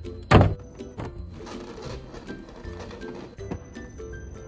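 A single thunk at a car's rear door about a third of a second in, as the door is handled and opened with paper shopping bags in hand, over steady background music.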